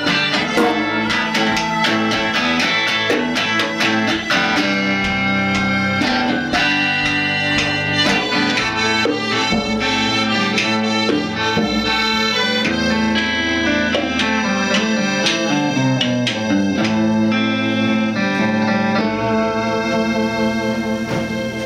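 Live instrumental break with no singing: an electric guitar picks a lead line over held accordion chords, with djembe hand drum keeping time.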